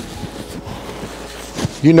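Close-up chewing of a crisp fried egg roll: faint, irregular crunches and mouth sounds, with one sharper crunch just before a man's voice comes back in near the end.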